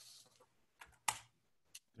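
A few faint, sharp clicks of computer keys, the loudest about a second in, as slides are being advanced in a presentation.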